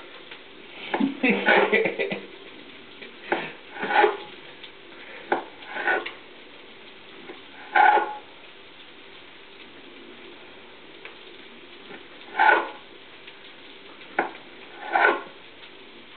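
Knife cutting slices off a sausage on a kitchen counter, irregular short knocks and scrapes, over a steady faint sizzle from a frying pan.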